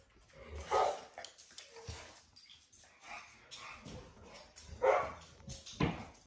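Pit bull-type dog giving short barks, the loudest about a second in and near the end, with quieter sounds between.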